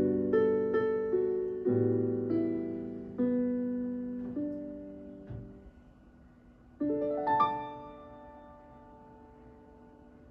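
Piano accompaniment playing the closing bars of a song: a few chords and single notes, each left to ring and fade, then a last chord about seven seconds in that dies away softly.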